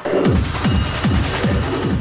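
A Schranz track, the hard, fast German techno style, played back: a distorted kick drum pounds about three times a second under a dense, noisy upper layer.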